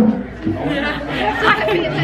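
Several voices talking over one another: chatter in a crowded restaurant dining room.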